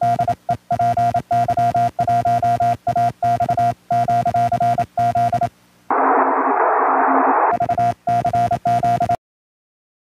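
Morse code (CW) sent on a paddle key and heard as the transceiver's steady high-pitched tone keyed in dots and dashes. The keying pauses about halfway through for a couple of seconds of receiver hiss, resumes, and the sound cuts off shortly before the end.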